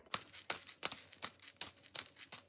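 Hand-twisted pepper grinder grinding peppercorns: an irregular run of quick, crunchy clicks.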